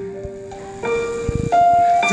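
Live band playing a short instrumental passage between sung lines. Held notes step up in pitch about a second in and again near the end, the last the loudest, with a couple of low thumps beneath.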